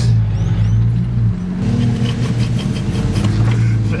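Car engine running steadily under way, heard from inside the cabin. The engine note drops about a second in, then picks up again at a higher pitch.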